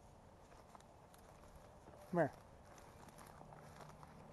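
Footsteps walking outdoors, with scattered faint steps and crunches throughout. About two seconds in, a man calls out a short, loud 'come here' that drops steeply in pitch.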